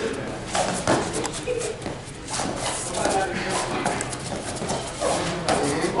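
Fighters' feet shuffling and tapping on a foam sparring mat, many short taps in quick succession in the first couple of seconds, under indistinct voices of coaches and spectators.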